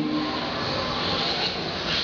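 A steady rushing noise with no voice in it.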